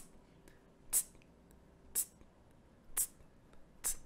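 Hi-hat beat imitated with the mouth: short, hissy 'tss' sounds, evenly spaced about once a second, marking the steady pulse of a 4/4 bar.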